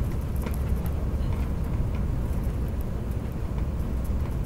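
Airliner cabin noise as the jet rolls along the runway after landing: a steady low rumble of engines and wheels, with a few faint ticks and rattles.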